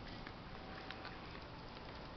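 Faint, steady outdoor background noise with no distinct sounds in it.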